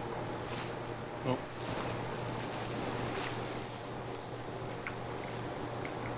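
Steady low electrical hum of shop machinery, with a few faint light taps and clicks scattered through it.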